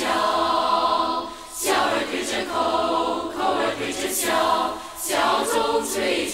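Choir singing in a Mandarin pop song: a long held chord for about the first second and a half, then three shorter sung phrases with brief breaks between them.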